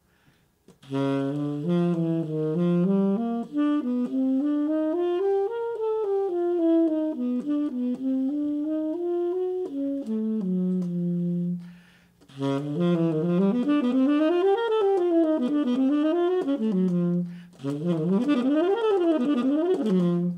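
Solo saxophone playing an exercise line slowly, as three phrases of notes running up and down. Each phrase ends on a held low note, and the runs come faster with each phrase.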